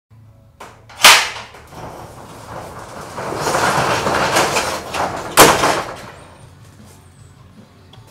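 Two sharp bangs, one about a second in and the loudest near the middle, with a swelling rush of noise between them that fades off afterwards.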